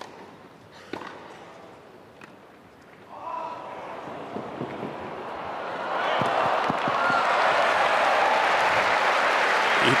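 Tennis ball struck by rackets on a grass court: a sharp serve hit, then two more hits about a second apart. Then the crowd exclaims and breaks into applause and cheering for the winning shot, swelling from about six seconds in.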